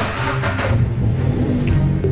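A car engine revs once, starting suddenly and settling within about a second. Dark background music with a low drone plays underneath.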